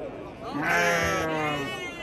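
A sheep bleating: one long, drawn-out call starting about half a second in and lasting well over a second, fading slightly in pitch at its end.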